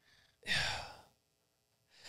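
A man's single breathy sigh or exhale, about half a second long, about half a second in; otherwise near silence.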